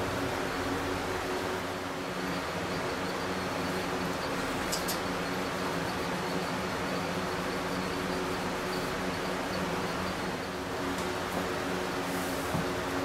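Electric box fans running: a steady whirr of air with a constant low hum. A single brief click sounds about five seconds in.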